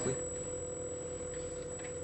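Powered brushless camera gimbal giving off a steady, even electronic whine, one unchanging tone over a quiet room background.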